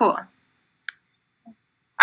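A single short click of a computer mouse about a second in, advancing a presentation slide, between stretches of a woman's voice.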